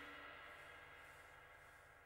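The last held notes of a piece of music fading out to near silence.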